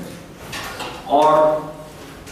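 A man's voice saying a single word in Hindi. Before it come faint scratchy strokes of a marker on a whiteboard.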